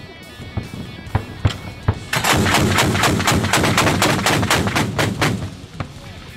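Anti-aircraft autocannon fire: a few single shots, then a burst of about three seconds starting about two seconds in, at roughly six or seven rounds a second.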